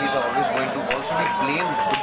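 Background voices and crowd chatter at an outdoor gathering, with a long steady held tone over them.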